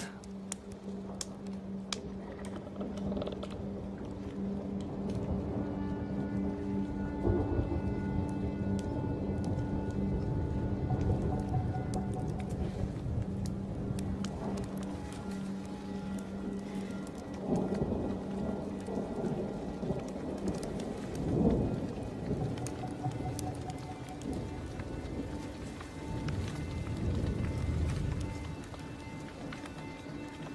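Rain falling, with rolls of thunder swelling about halfway through, loudest a little after that, and again near the end. Underneath runs a film score of long, held notes.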